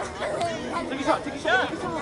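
Several people talking and calling out, their voices overlapping.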